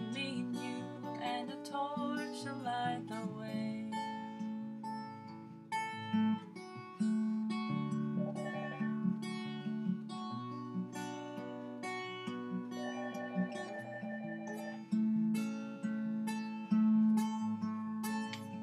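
Acoustic guitar strummed and picked in an instrumental passage. A telephone rings over it in short warbling trills, first about eight seconds in and again around thirteen seconds.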